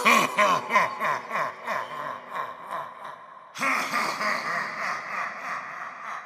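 Clown animatronic's recorded evil laugh, a run of repeated 'ha-ha' peals that fade away. A second laugh breaks in suddenly about three and a half seconds in and fades out in turn.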